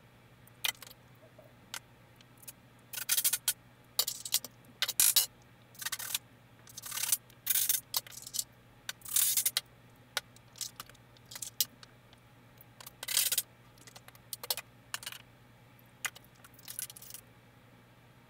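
Irregular handling noises from framing work: scattered sharp clicks and brief scratchy bursts, each under a second, separated by stretches of quiet, with a faint steady hum underneath.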